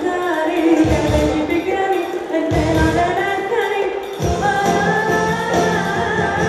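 Live Greek pop song: a woman's lead vocal over a band. The bass and drums come and go in the first few seconds, then hold steady from about four seconds in.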